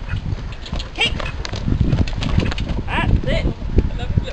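A horse's hoofbeats at canter through a grid of jumps: a run of dull thuds on the arena's sand surface, growing louder as the horse comes close past.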